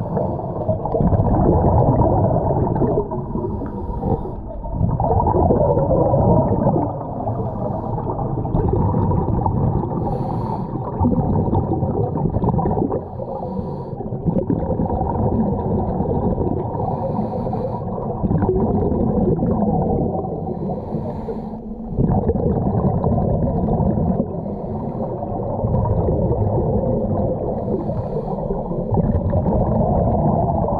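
Scuba divers' regulator breathing and exhaled bubbles, heard underwater: a muffled, rushing rumble that swells and eases every few seconds with the breaths.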